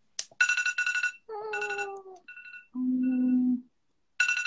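An electronic alarm melody playing: a burst of rapid high beeps, a lower note sliding slightly down, more high beeps, then a steady low note held for most of a second.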